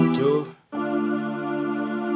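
Electronic keyboard playing sustained, organ-like chords: the held chord is released shortly after the start, there is a brief silent gap, and a new chord comes in under a second in and is held.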